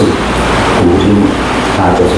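A man lecturing in Mandarin, over a steady low rumble in the recording.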